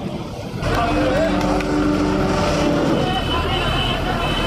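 A heavy vehicle engine, a wheel loader's, running steadily from about half a second in, with a raised voice held over it for a couple of seconds.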